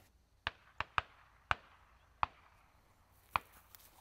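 Six sharp clicks or taps, irregularly spaced, over a quiet background.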